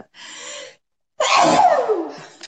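A woman sneezes: a sharp breath in, a brief pause, then one loud sneeze that falls in pitch.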